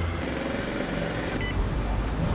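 A vehicle engine running with a steady low rumble.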